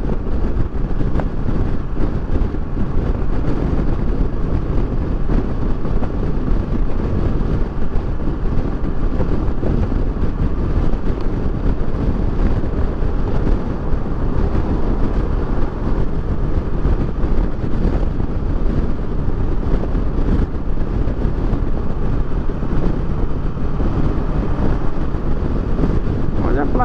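Kawasaki Versys 650's parallel-twin engine running steadily at highway cruising speed, mixed with a constant rush of wind and road noise.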